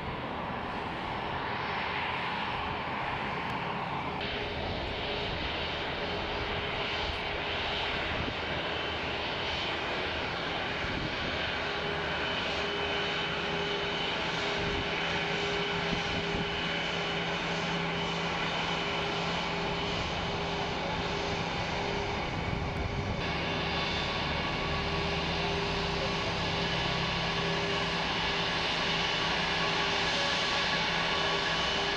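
Twin jet engines of an Airbus A320-family airliner running at low taxi power as it moves along the runway: a steady engine hum with two held tones coming in about a third of the way through, slowly growing louder.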